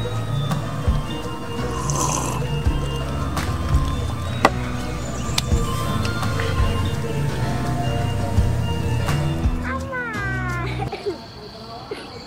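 Background music with steady bass notes and scattered clicks. About eleven seconds in it drops away to quieter outdoor ambience with a steady high insect drone.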